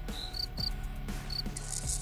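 Field cricket chirping: a few short, high-pitched chirps in small groups, made by rubbing its wings together. Faint background music runs underneath.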